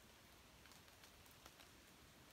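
Near silence: faint outdoor room tone with a few faint scattered ticks.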